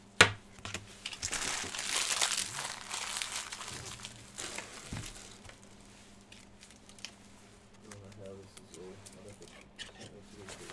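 Cellophane wrapper of a trading-card pack crinkling and tearing as it is opened by hand, loudest for a few seconds after a sharp click right at the start, then a few smaller rustles and taps.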